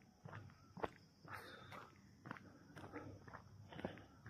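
Faint footsteps on a dirt road: a few soft, irregular steps.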